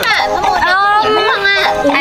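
Children talking excitedly in high-pitched voices, with speech running through the whole stretch.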